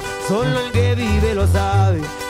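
Regional Mexican corrido band music: a tuba plays a bouncing bass line in low notes under strummed acoustic guitars, with a melody line that bends and glides above.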